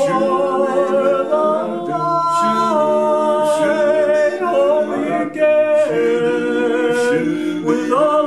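Male barbershop quartet singing a cappella in four-part harmony, holding sustained chords that shift every second or so.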